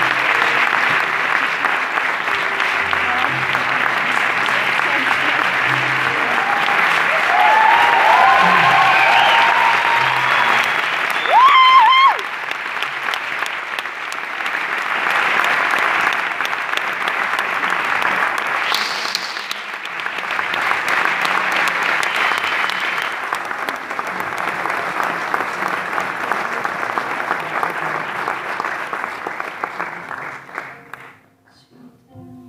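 Theatre audience applauding steadily, with voices calling out over it: a loud shout about twelve seconds in and a high whistle a few seconds later.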